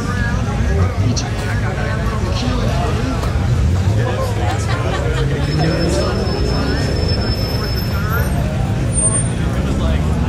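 A steady low rumble of vehicle engines under background crowd chatter. About five seconds in, an engine's pitch rises for a few seconds as it revs or pulls away.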